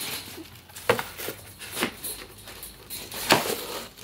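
Tissue paper rustling as a cardboard shoe box is handled, with a few sharp knocks of the box and lid, the loudest about three seconds in.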